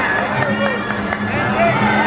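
Muay Thai fight music, a wailing reed-pipe melody over drums, under shouting voices from ringside, with a few sharp clicks in the first second.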